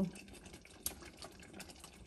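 Faint, scattered light clicks over a low, even hiss: quiet kitchen sounds.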